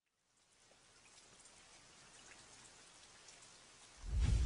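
Very faint hiss with scattered light ticks, fading in about half a second in and slowly growing louder.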